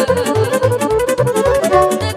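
Romanian folk dance music (hora/sârbă) played live by a band: a violin leads the melody over accordion and electronic keyboard, with a quick, steady bass beat of about four pulses a second.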